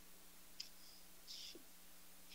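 Near silence: room tone with a faint steady hum and a couple of soft, short clicks.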